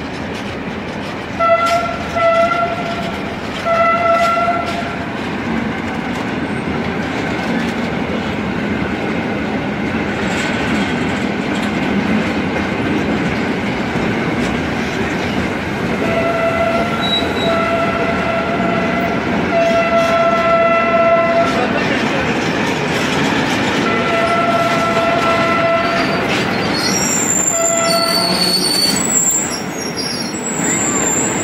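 A freight train's hopper wagons rolling past close by, a steady rumble and clatter of wheels on rail. A shrill single-pitched tone cuts in and out in short spells, several in the first few seconds and again repeatedly through the second half.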